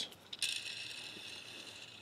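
Small plastic tail rotor of a Transformers Whirl helicopter toy flicked by a finger with a click, then spinning freely with a faint, steady high whir that slowly fades.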